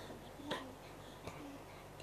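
Quiet room tone with two faint short clicks, one about half a second in and a softer one just past a second.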